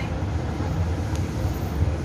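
A steady low rumble of background noise, with no clear pitch and no speech.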